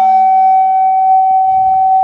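Harmonium holding one steady high note over a fainter low drone, with no singing over it.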